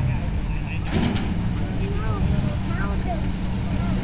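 Jeep Wrangler YJ engine running with a steady low rumble, faint voices behind it and a brief hiss about a second in.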